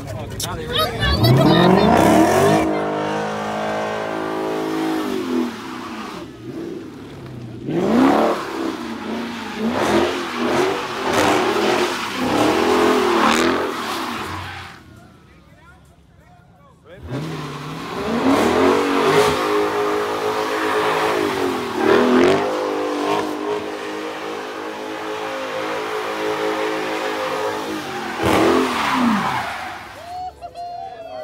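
Dodge Charger doing donuts: its engine is revving hard, the pitch climbing and falling again and again, over the hiss of spinning tyres. The sound drops away for a couple of seconds about halfway, then the revving resumes.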